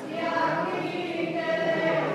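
A congregation singing a hymn together in long, held notes, a new phrase beginning just after the start.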